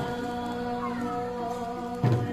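Harmonium holding steady notes under a voice that slides in pitch, a held, wavering sung note in a devotional Borgeet.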